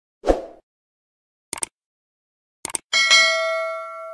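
Subscribe-button animation sound effect: a short soft thump, then two mouse clicks, then a bell ding near the end that rings on and fades slowly.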